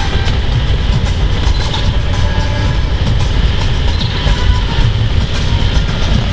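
Steady low rumble of road and engine noise heard inside a car's cabin as it drives along a narrow forest road.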